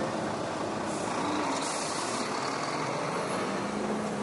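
Heavy truck with a multi-axle low-loader semi-trailer rolling slowly past on a wet road: a steady mix of engine running and tyre noise on the wet asphalt.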